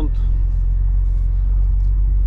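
Steady low rumble of a heavy truck's engine and tyres, heard inside the cab while driving on a rough, patched road.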